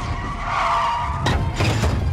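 Film car-chase sound: tyres squealing over the low rumble of a racing car engine, with a sharp bang about a second and a half in.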